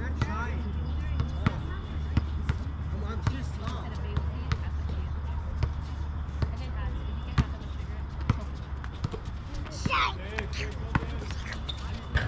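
Basketball bouncing on an outdoor court as players dribble: irregular short thuds, with voices calling out and a louder rising shout about ten seconds in.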